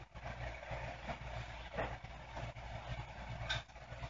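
Quiet room tone: a low steady hum with a few faint short knocks or rustles, one about two seconds in and another near the end.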